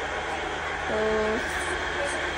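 A domestic electric flour mill (atta chakki) running with a steady, even noise, with a woman saying one short, drawn-out word about a second in.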